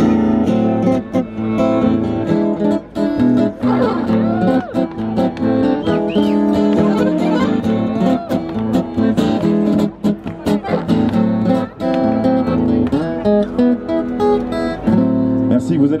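Acoustic guitar strummed together with a Beltuna piano accordion playing sustained chords, an instrumental passage of a French pop-rock song played live.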